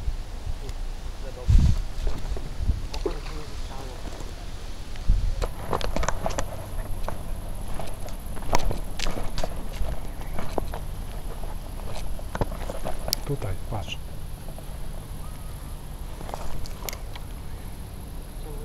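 Footsteps over dry ground and grass, with irregular knocks and rustles of the camera being handled while walking, densest in the middle of the stretch.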